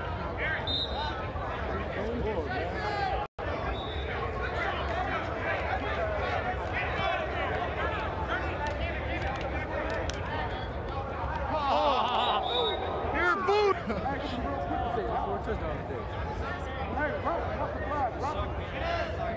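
Overlapping voices of players and onlookers calling and shouting during a flag football game, inside a large air-supported sports dome, with louder shouts about twelve seconds in. The sound cuts out for an instant a few seconds in.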